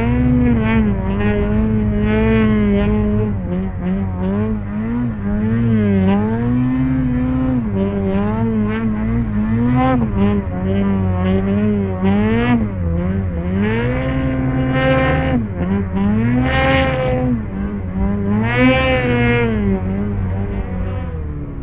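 Snowmobile engine running hard under load through deep powder snow, revving up and down with the throttle so its pitch rises and falls every second or two, climbing highest in several surges near the end.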